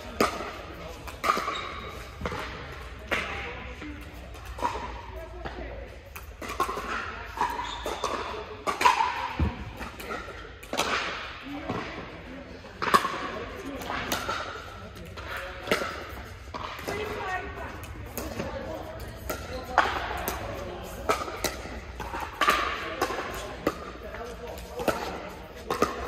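Pickleball paddles hitting a hard plastic ball during rallies: sharp pops every second or two, ringing in a large indoor court hall. Indistinct voices of players run beneath them.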